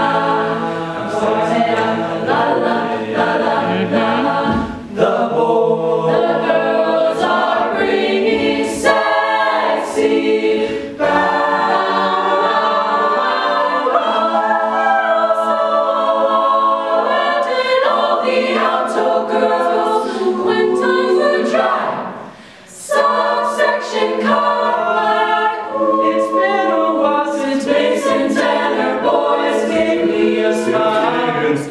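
Mixed-voice a cappella group singing a pop arrangement in close harmony, with no instruments. A low bass line drops out about four seconds in, and the singing breaks off briefly about 22 seconds in before resuming.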